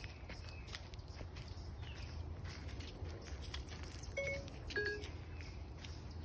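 Footsteps on a dirt trail strewn with dry leaves and pine needles, with birds chirping lightly in the background. Two short pitched notes sound about four and five seconds in.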